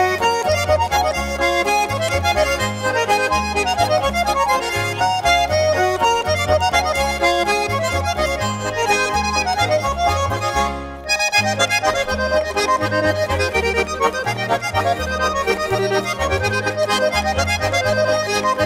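Schwyzerörgeli trio playing a traditional Swiss Ländler: Swiss diatonic button accordions carry a quick, busy melody over a regular alternating bass, with a brief break in the music about eleven seconds in.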